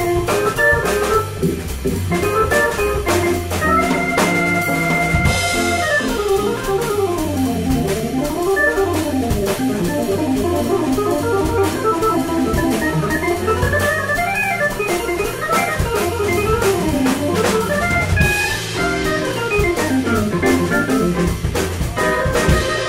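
Jazz organ solo in a Hammond-style voice on a two-manual keyboard, with fast runs of notes sweeping up and down and a chord held about four seconds in. A drum kit keeps time underneath.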